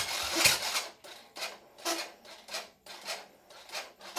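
Honda Supra Fit's electric starter turning the engine over slowly, in uneven pulses about twice a second, after a brief rush of noise at first; the engine does not catch, because the battery is too weak to crank it properly.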